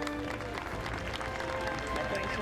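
Background music with a crowd of spectators clapping, many scattered claps over the steady music.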